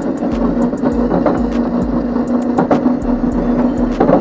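Razor Crazy Cart XL electric drift kart being driven in a drift, its motor giving a steady whine, with a scatter of sharp clicks from the wheels on the concrete.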